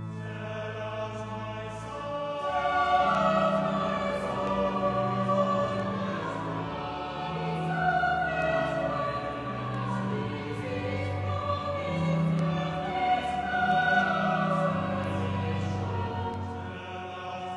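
A choir singing slowly in held, sustained chords.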